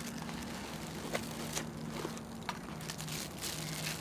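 Quiet handling of packaging as a boxed item in a plastic bag is lifted out of a cardboard box: a few faint rustles and light clicks over a faint steady low hum.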